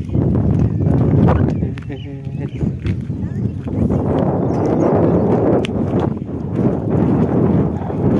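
Wind rumbling and buffeting on a phone microphone outdoors, heaviest in the second half, with a brief human voice about two seconds in.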